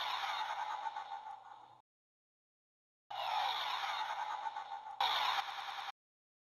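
Two bursts of a dubbed sci-fi sound effect, each a dense electronic whir with falling sweeps over a low steady hum. The first fades out about a second and a half in; the second starts about three seconds in and steps up in level near the end, with dead silence between them.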